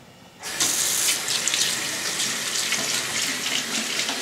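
Bathroom sink faucet turned on about half a second in, then tap water running steadily into the basin.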